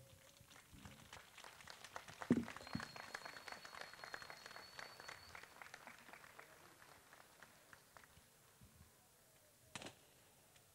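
Faint applause from a crowd, swelling about two seconds in and dying away, with a thin high whistle partway through. Near the end there is a single sharp bang.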